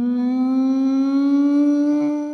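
One long, steady held tone that slides slowly upward in pitch and stops abruptly.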